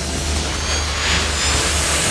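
Intro sound design: a rushing noise effect that swells about a second in, over a deep steady rumble, with a few faint thin high tones.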